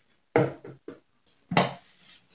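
Plastic lid of a microwave baby-bottle sterilizer being set down and fitted onto its loaded base: a few short hollow plastic knocks and clicks.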